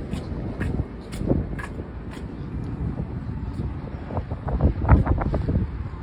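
Wind buffeting a handheld phone's microphone while walking on a concrete platform, with faint footsteps about twice a second.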